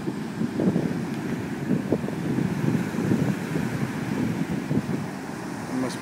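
Ocean surf washing up the beach, a steady rushing wash, with wind buffeting the microphone in irregular gusts.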